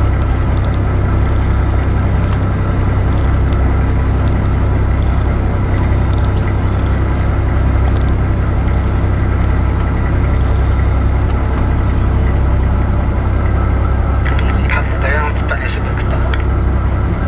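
Fishing boat's engine running steadily with a continuous low rumble. Something brief and brighter, possibly voices, comes in near the end.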